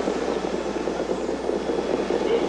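Steady, dense rumble of a large racecourse crowd during a harness race, with no single event standing out.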